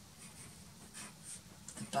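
Pencil scratching across paper in a few short, soft strokes as it traces firmly over a photo print, pressing the graphite rubbed onto the print's back through onto the painting paper beneath.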